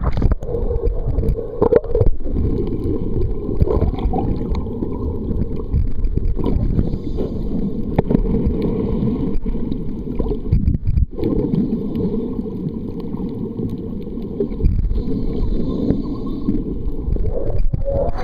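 Muffled underwater rumble and gurgling of moving water, heard through a camera held underwater.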